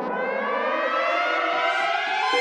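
A riser opening a song: a cluster of pitches gliding slowly upward together and swelling steadily louder, like a siren sweep, with held notes coming in near the end.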